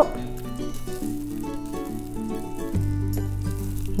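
Soft background music with steady held notes; a deeper bass note comes in about three-quarters of the way through.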